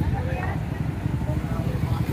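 A vehicle engine running steadily nearby, a low drone, with faint voices in the background.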